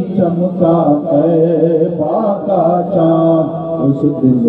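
A solo voice chanting a devotional Urdu poem (naat/manqabat) in long, drawn-out melodic notes, holding a steady pitch for a second or so at a time.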